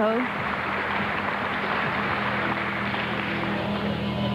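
Arena crowd applauding, a steady, even clatter of clapping, over a low steady hum.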